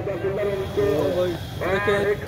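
Indistinct voices calling out, with one long wavering cry near the end.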